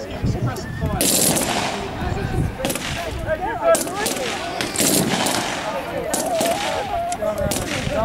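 Small-arms gunfire: rifles and a light machine gun firing irregular single shots and short bursts, with shouted voices between the shots.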